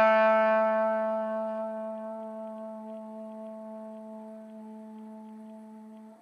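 Trombone holding one long note, fading slowly and evenly as it dies away.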